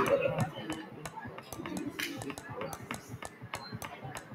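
A steady run of short sharp clicks, about four or five a second, under a man's soft counting voice.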